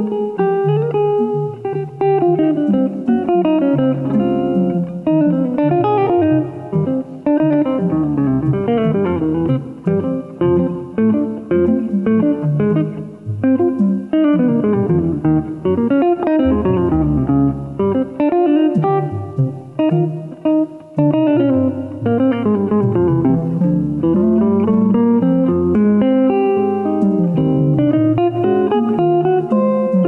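Live jazz-style instrumental duo: a hollow-body electric guitar plays chords and runs while a reed wind instrument carries a melody that climbs and falls in quick runs.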